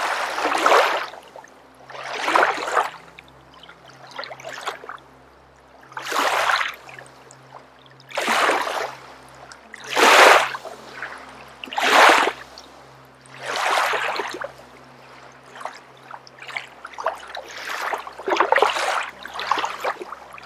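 Deep, audible breathing, one long rush of breath about every two seconds, turning quicker and more ragged near the end: the effortful breath of a person holding a leg-raised core pose.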